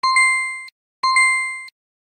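Two electronic ding chimes from a learning app, one at the start and one about a second later, each a single clear tone that fades out in under a second. Each ding marks a reward star awarded on the lesson-complete screen.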